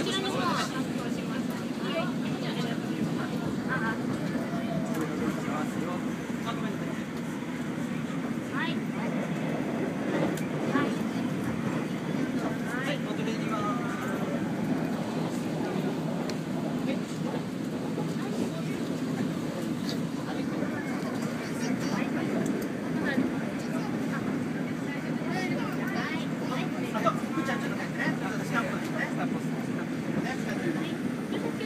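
Steady running noise inside a moving train carriage, with passengers chattering in the background.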